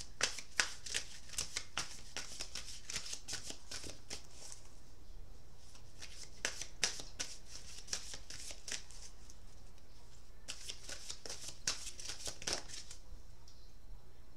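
A deck of oracle cards being shuffled by hand: quick runs of soft card clicks in three spells, with short pauses between.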